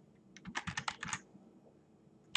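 Computer keyboard keys typed in one quick run of about a dozen keystrokes, starting about a third of a second in and stopping a little past one second.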